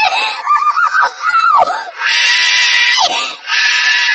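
A boy's voice yelling and screaming, played backwards so the words come out garbled. Halfway through, the choppy yelling gives way to a long harsh scream, which breaks off briefly and then starts again.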